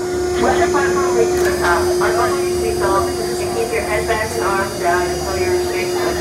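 Voices of people talking around an amusement park flat ride before it starts, over a steady machine hum and a low rumble from the ride's equipment.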